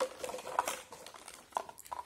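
Toy food being rummaged through in a box: light rustling with scattered small clicks and knocks as items are moved about and one is picked out.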